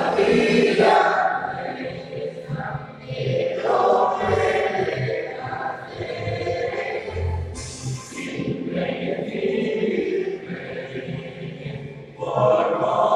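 A choir singing an anthem with instrumental backing, played as recorded music over loudspeakers.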